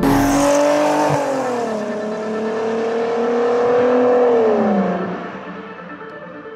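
Audi W12 engine in a VW T3 van accelerating hard: its pitch climbs, drops at a gear change about a second in, then climbs steadily again. Near the end the pitch falls and the sound fades away.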